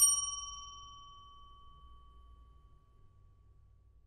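A single bell-like chime of an audio logo, struck once right at the start and ringing out, fading away over about three seconds.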